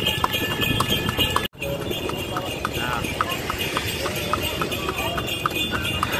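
A cart horse's hooves clip-clopping on asphalt in a steady rhythm as it trots, pulling a horse-drawn dokar, over road noise. The sound cuts out briefly about a second and a half in.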